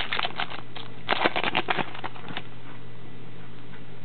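Foil trading-card pack wrapper being torn open by hand, crinkling in two short bursts of crackles in the first two seconds, then a steady low hum.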